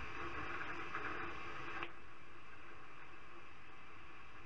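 Steady static-like hiss with a few faint ticks, a little brighter for the first two seconds and then even.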